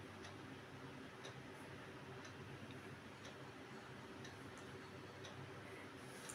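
Faint, regular ticking about once a second over a low steady hum.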